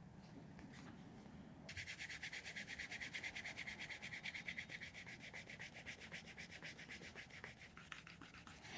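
Edge of a shell cordovan leather piece being rubbed rapidly back and forth by hand, a fast, even scratchy stroking that starts about two seconds in and eases off near the end.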